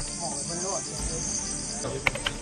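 Crickets chirping in a steady night insect chorus, with people's voices talking faintly. The background changes abruptly near the end.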